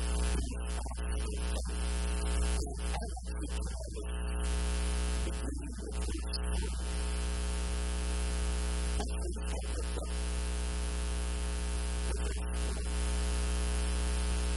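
Loud steady electrical mains hum and buzz, a deep drone topped by a dense stack of steady overtones, that drowns the recording. A man's voice comes through faintly in a few short patches beneath it.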